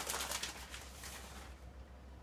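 Shredded mozzarella shaken from a plastic bag onto a lasagna: soft rustling of the bag and patter of the cheese falling, fading out after about a second and a half.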